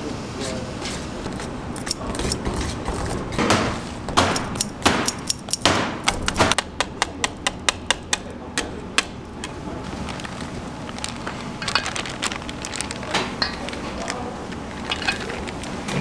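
Wire whisk working whipped cream into custard cream in a stainless-steel bowl: soft stirring and scraping, then a run of quick clinks of the wires against the bowl, about three a second, in the middle.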